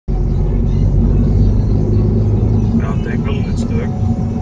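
Steady low rumble of the car's engine and tyres on the road, heard from inside the cabin while driving at around 60 km/h. A voice says a few words near the end.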